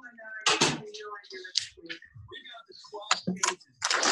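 Indistinct talking, broken by several short, sharp knocks or slaps at irregular intervals.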